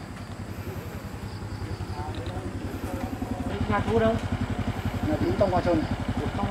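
A small motorcycle engine idling with a fast, even low pulse, growing louder as it draws near.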